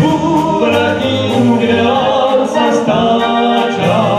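Two male singers singing a song together into microphones, accompanied by a Slovácko brass band (dechová hudba) with a stepping tuba-style bass line.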